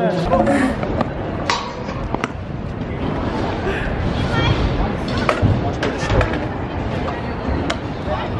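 Indistinct voices and background chatter, broken by several sharp clacks and knocks.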